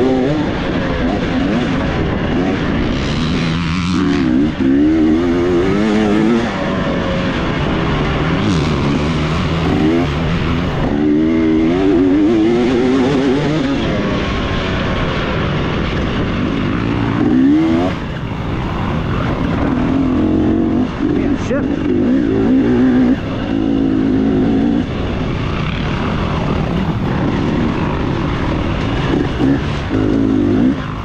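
Off-road dirt bike engine under hard riding, its pitch repeatedly climbing and dropping as the rider works the throttle and shifts, with short dips about 4, 10 and 17 seconds in.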